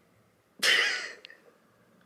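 A woman's single short, breathy vocal burst, about half a second long, starting just over half a second in, followed by a faint click.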